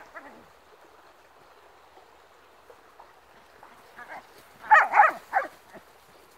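A dog barking: one short bark at the start, then a quick run of three or four loud barks near the end.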